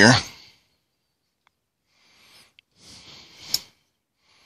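Faint handling noise as a transistor is fitted into a component tester's socket, ending in a single sharp click near the end.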